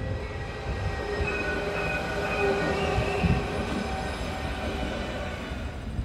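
Alstom Citadis 302 articulated tram running past on its track: a steady rush of wheels on rail with a faint high whine over it.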